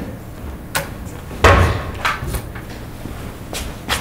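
A locker door pushed shut with a knock about one and a half seconds in, with light clicks before and after it and a sharp click near the end.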